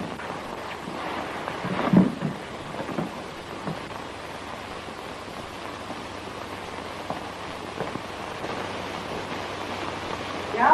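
Steady hiss of an old optical film soundtrack, with a few short thumps, the loudest about two seconds in.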